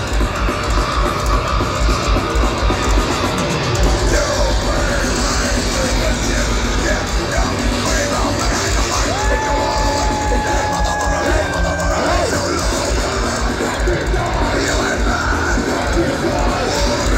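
A heavy metal band playing live at full volume: pounding drums and distorted guitars with shouted vocals, and a single note held for a few seconds about halfway through. It is heard from far back in an arena crowd.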